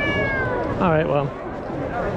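Norwegian forest cat meowing: a high call that falls in pitch, then a shorter, lower call about a second in.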